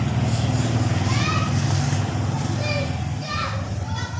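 A steady low mechanical drone, with a few high-pitched children's calls in the background about a second in and again near the end.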